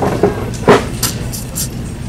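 Steady low background hum of a store aisle, with one short sound about two-thirds of a second in and a few brief faint hisses after it.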